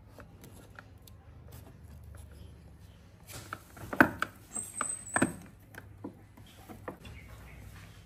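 Screwdriver turning a screw into a scooter's plastic body panel: a few sharp clicks and knocks about halfway through, with a brief high squeak among them.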